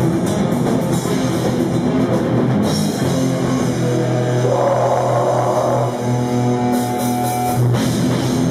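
Live heavy metal band playing a song: distorted electric guitars and drum kit, loud and without a break.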